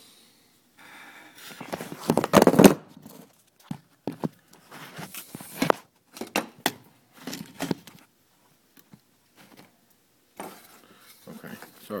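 Handling noise: rustling, crinkling and short clicks as a plastic wiring connector and its harness are worked in the hands, loudest about two to three seconds in.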